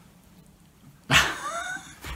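A short, high-pitched cry rising in pitch, about a second in, lasting under a second.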